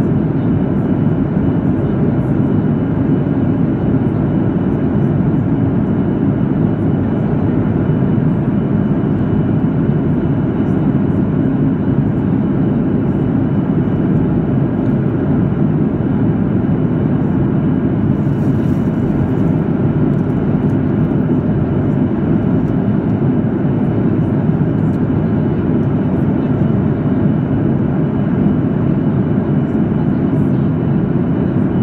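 Steady cabin roar of a Boeing 737 MAX 8 in cruise, heard from a window seat over the wing: engine and airflow noise, deep and even, with a faint high whine.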